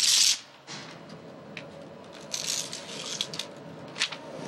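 Instant-film print being peeled apart and handled: a short, loud ripping hiss right at the start, then softer paper rustling and scraping in the middle.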